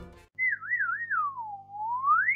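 A comic whistle: one clear tone that wavers twice, glides down, and then sweeps back up higher. Background music cuts out just before it begins.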